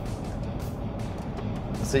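Steady low rumble of road noise inside the cab of a 2022 Ford F-150 cruising at about 75 mph on the interstate, with music playing quietly on the truck's stereo.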